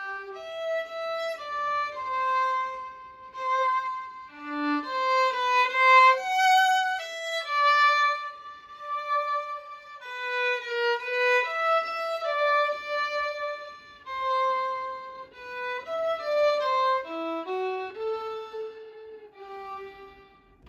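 Solo violin, bowed, playing a slow melody of held notes in a single line, each note swelling and fading. It is the opening phrase of a classical piece played deliberately to sound tired.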